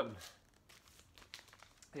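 Clear plastic outer sleeves on vinyl LPs crinkling as the records are picked up and handled: a faint run of small crackles.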